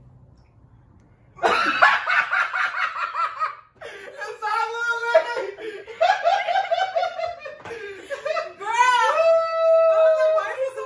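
Hearty laughter that breaks out about a second and a half in and goes on in quick rhythmic peals, rising to a long high held laugh near the end.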